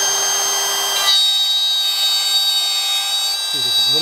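DeWalt DCW600B 20V brushless compact cordless router running at speed and cutting a groove in plywood along a straight edge: a steady high whine with hiss. The note changes about a second in, then holds steady.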